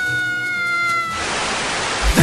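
A high, drawn-out pitched cry held for over a second, dipping in pitch at its end, followed by a short rushing hiss.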